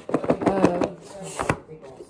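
Stacked plates set down on a kitchen countertop, with one sharp knock about one and a half seconds in.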